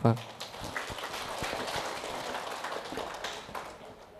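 Audience applauding in a large hall, the clapping gradually dying away over about four seconds.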